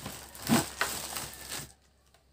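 Packaging rustling and crinkling as it is handled, with a louder knock about half a second in; it stops about a second and a half in.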